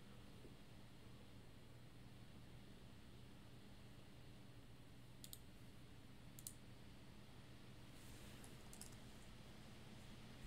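Near silence over a low steady hum, with a few faint computer mouse clicks and keystrokes: single clicks about five and six and a half seconds in, then a quick run of keystrokes near the end as a ticker is typed into a search box.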